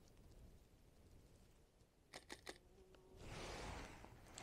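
Near silence, then about two seconds in a mirrorless camera's shutter fires a quick burst of three faint clicks: a three-frame exposure-bracketed burst. A soft rush of noise follows near the end.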